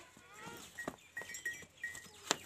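A farm animal's short cry, rising and falling in pitch, with a few brief high chirps after it.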